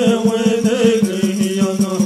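Native American Church peyote prayer song: a man chanting, his melody stepping down, over a fast, even beat of water drum and gourd rattle, about seven strokes a second.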